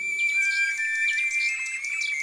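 A toy nightingale singing: a thin, high whistled tune of held notes that step between a few pitches.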